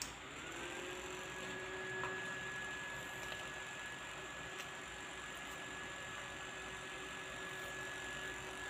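Faint steady hum of a motor, starting with a short rising whine that settles into a steady tone.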